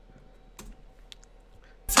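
A few faint, sharp clicks of computer keyboard keys being pressed. Just before the end, the rap track comes back in.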